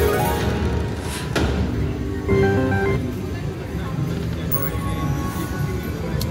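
Fu Dai Lian Lian video slot machine playing its electronic feature music and chimes during a free spin, with a short stepped melodic jingle about two seconds in as the win meter counts up.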